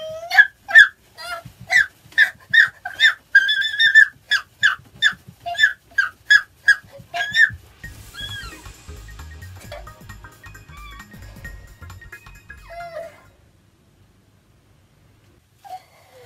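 A woman squealing in rapid, high-pitched bursts of ticklish laughter, about two or three a second, as the sole of her foot is tickled. About halfway through the squeals stop, softer sounds follow for a few seconds, and it goes nearly quiet near the end.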